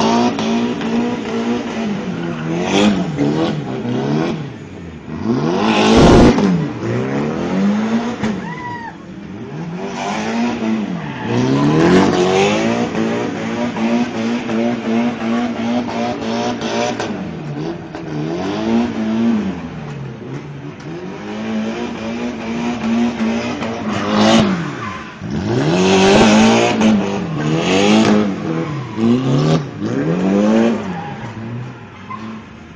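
Drift car's engine held at high revs while it spins donuts, its revs dropping and climbing back every couple of seconds, with tyre noise. A single sharp bang about six seconds in is the loudest sound.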